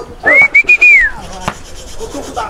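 A loud human herding whistle driving cattle: one call of about a second that rises to a high pitch, holds with slight breaks, then falls away. A sharp knock follows about a second and a half in.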